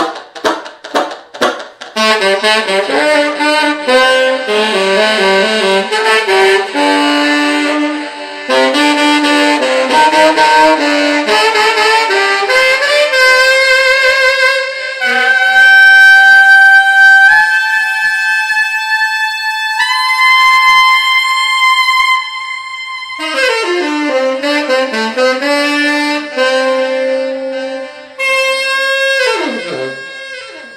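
Cannonball tenor saxophone playing an improvised solo in a B blues scale. It opens with short, detached notes, moves into quick runs, then holds long notes that climb higher in steps around the middle. A falling run and a held note follow, and the last note slides steeply down in pitch at the very end.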